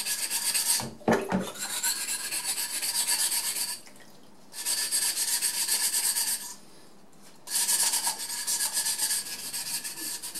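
Wet 400-grit sandpaper scrubbed quickly back and forth on the freshly cut edge of a green glass wine bottle, dulling the sharp edge. The strokes come in fast, even runs that stop briefly twice, about four and seven seconds in.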